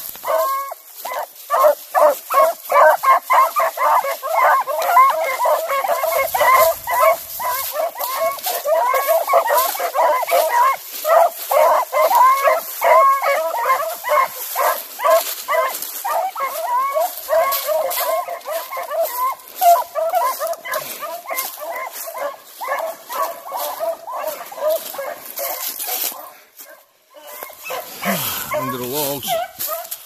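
A pack of beagles yipping and baying in fast, overlapping calls, working quarry holed up in thick cover. The calls drop out briefly near the end.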